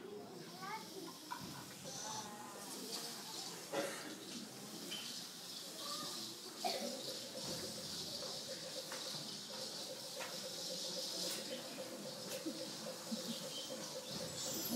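Imitated frog calls: a few short croak-like pitch glides near the start, then from about seven seconds a steady pulsing trill that carries on to the end, over a faint high hiss.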